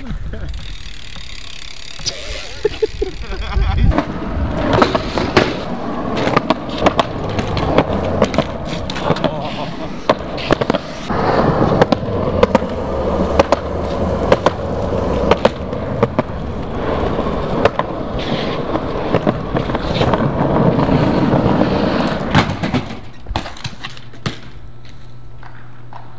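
BMX bike wheels rolling over rough concrete, with many sharp knocks and clatters as the bike lands and hits the ground and ledges during street tricks. The rolling builds about four seconds in and dies away a few seconds before the end.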